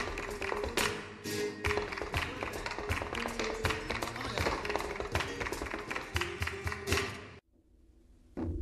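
Flamenco music driven by rapid, sharp percussive strikes, typical of flamenco dance footwork, over sustained pitched notes. It cuts off suddenly near the end, leaving about a second of much quieter sound.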